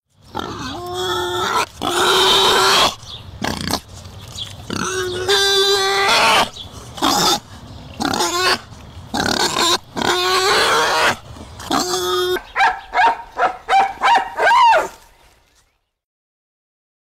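An animal's loud squealing calls in bursts of a second or two, with short gaps between them. Near the end they turn into a quick run of short calls, then fade out.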